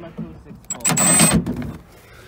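Milwaukee brushless cordless impact driver run in one short burst of about half a second, about a second in, on a bolt in the truck's body.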